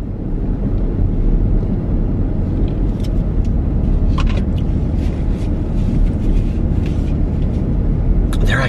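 Road and engine noise heard from inside a moving car's cabin: a steady low rumble, with a few faint light clicks.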